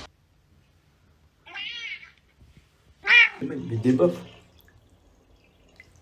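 Two cat meows: a short, wavering one about a second and a half in, then a louder one about three seconds in that falls in pitch and trails off into lower sounds.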